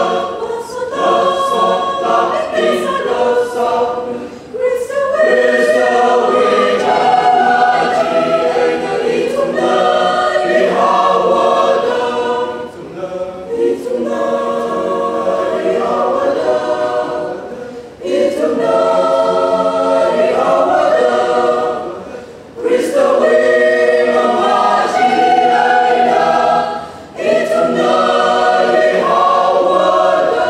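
Mixed choir of men's and women's voices singing together, in phrases of a few seconds broken by short breaths.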